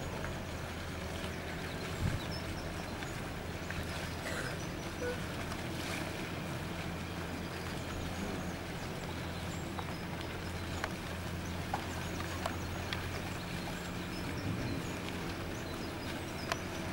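Motor cruiser's inboard engine running at low speed, a steady low hum, with a brief thump about two seconds in.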